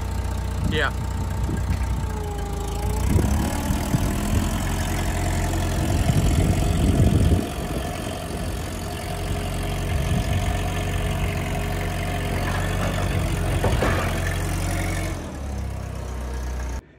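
Propane-fuelled TCM forklift engine running while the forklift is driven. It is louder from about three to seven seconds in, then settles back.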